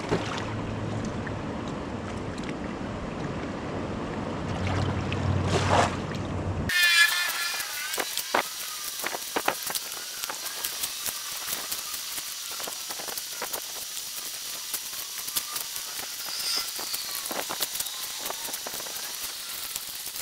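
Shallow sea water lapping and splashing around hands and a knife as a fish is cleaned at the water's edge. From about seven seconds in come many small, sharp splashes and clicks.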